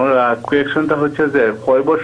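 Speech only: a caller talking over a telephone line, the voice thin and narrow like a phone call.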